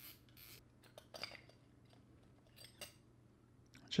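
Faint handling sounds from a spinning reel: a few light clicks and rubbing as the spool is unscrewed and slid off the main shaft. The sharpest click comes a little over a second in.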